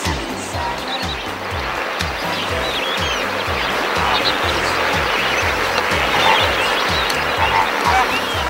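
Background music with a steady low beat, mixed with the calls of a large flock of flamingos taking flight: a dense chatter of honking calls that grows louder from about the middle on.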